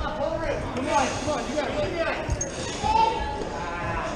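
Indistinct voices talking, with a single dull low thud a little past two seconds in.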